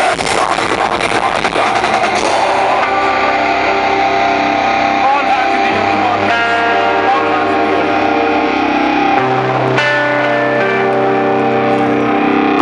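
Metal band playing live through stage amplification: distorted electric guitars and drums for the first couple of seconds, then the drums drop out and held guitar chords ring over a steady bass note, shifting to a new chord about nine seconds in.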